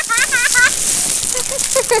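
A child giggling in quick, high-pitched bursts over a steady crackling hiss.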